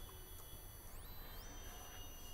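Near silence: faint room tone with a low hum and thin, faint high-pitched tones that step up in pitch about a second in.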